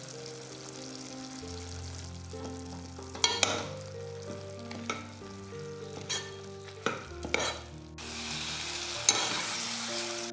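A spoon stirring chicken pieces and spice powders in a cooking pot, clacking and scraping against the pot several times from about three seconds in. The mixture sizzles louder over the last two seconds.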